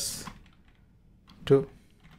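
A few faint computer keyboard keystrokes as code is typed, between two short spoken words.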